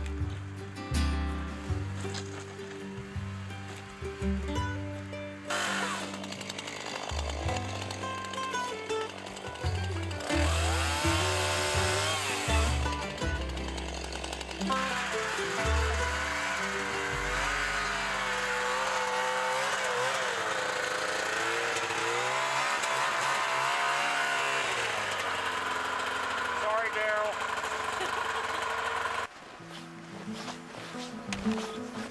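Background music plays throughout. From about five seconds in, a chainsaw runs beneath it, revving up and down as it cuts through fallen trees blocking a snowmobile trail. The saw sound cuts off shortly before the end.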